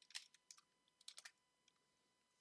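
Faint computer keyboard typing: a quick run of about eight keystrokes over the first second or so, then it stops.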